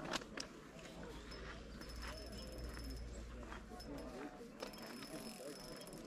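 Faint, distant talk from people along the lakeshore, with a few light clicks and a thin, faint high tone in the middle.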